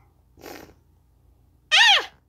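A child's voice crying out once near the end, a short high-pitched yelp that falls in pitch, acted as the startled 'Ahh!' of someone slipping. A brief breathy rush comes about half a second in.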